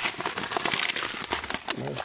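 Plastic bags crinkling and rustling as they are handled, a rapid run of small sharp crackles.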